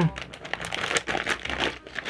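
Plastic Yoritos snack packet crinkling and rustling as it is handled in the hands, a run of irregular crackles.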